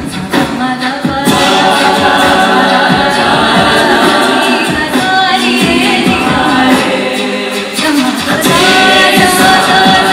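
A cappella group of Bollywood-style singers on handheld microphones: a female lead voice over layered backing voices, the sound filling out about a second in.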